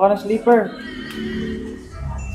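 A young child's voice giving two short calls, each falling in pitch, within the first second.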